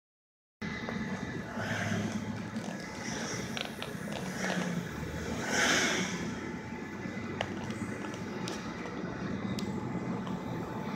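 Car driving on a country road, heard from inside the cabin: steady engine hum and tyre and road noise, with one louder rush about halfway through.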